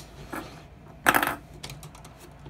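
Hard plastic parts of a Machine Robo Mugenbine combining toy clicking and clattering as they are handled and fitted together, with a louder short clatter about a second in.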